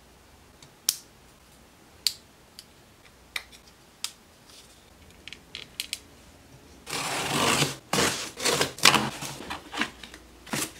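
A few sharp, separate clicks of small plastic model-kit parts being handled and fitted together, then, about seven seconds in, louder rustling and crinkling of cardboard and paper packaging being opened.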